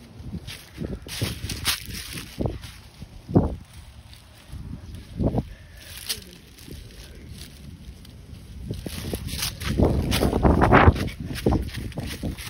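A handheld phone being jostled as it swings about: irregular low thumps and rustling, with a longer burst of rustling near the end.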